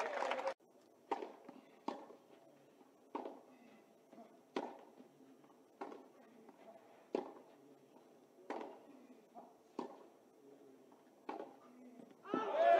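Tennis rally: a string of sharp racket-on-ball hits and ball impacts, about one every second or so, faint over a quiet background.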